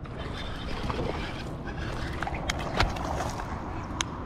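Water splashing and sloshing at the side of a kayak, with a few sharp clicks and knocks, as a hooked bass is fought and swung out of the water near the end.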